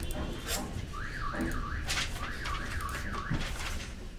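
An electronic alarm warbling up and down in pitch, about two and a half sweeps a second, starting about a second in and stopping near the end. It sits over a steady background rumble with a few short knocks.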